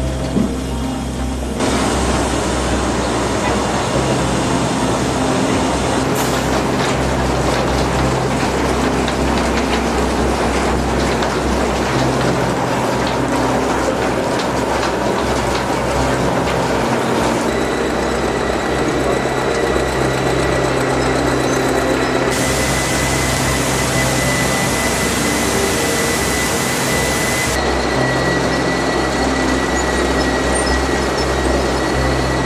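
Sugar mill machinery running: a steady low hum under dense mechanical noise, its character changing abruptly several times.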